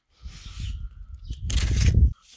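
Cardboard shipping box being cut open with a knife: a faint scrape of the blade along the packing tape, then louder scraping and rustling of cardboard near the end.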